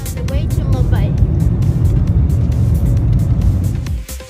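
Loud, steady low rumble of an airliner's engines heard from inside the cabin, with a few brief gliding tones about a second in.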